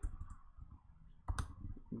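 A few keystrokes on a computer keyboard, the loudest about one and a half seconds in.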